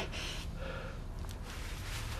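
A quiet breath, a soft intake of air, over a low steady room hum.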